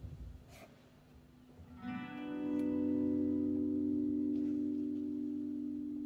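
Quiet for about two seconds, then a guitar note swells in through an effects unit and is held steadily as one long sustained tone, slowly fading.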